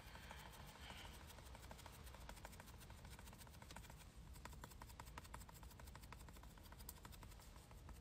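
Near silence with faint, irregular light ticking throughout.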